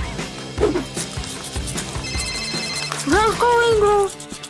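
A telephone ringing briefly, a rapid pulsed trill, about two seconds in, over background music. Near the end comes a short rising, then held, voice-like sound, the loudest part.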